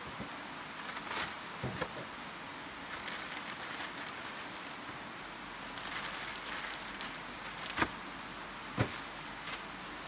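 Plastic resealable bag rustling and crinkling as pieces of lamb are put into it and handled, with a few sharp clicks or knocks scattered through.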